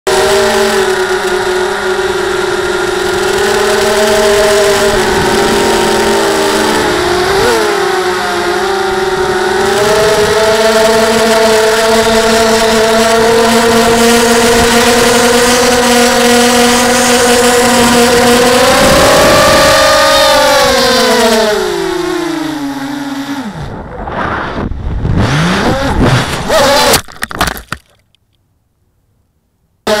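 Blackout Mini H quadcopter's electric motors and propellers whining steadily at flight throttle. After about twenty seconds the pitch slides down, then the motors stutter in erratic bursts and cut out to silence: a loss of power in flight that the pilot suspects came from a lost radio link or a receiver desync.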